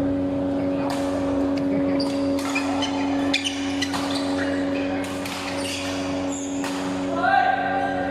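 Badminton hall ambience: rackets striking shuttlecocks in sharp, irregular cracks from several courts, with players' voices and a louder call about seven seconds in, over a steady hum.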